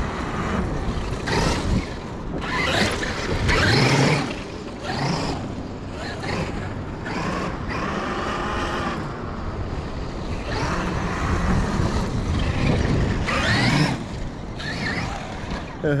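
Traxxas X-Maxx 8S electric RC monster truck driving on sand, its brushless motor whining up and down in pitch with the throttle, amid heavy wind on the microphone.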